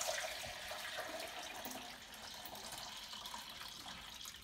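Kombucha poured in a steady stream from a large glass jar into a plastic measuring jug, splashing into the liquid already in it and slowly getting quieter.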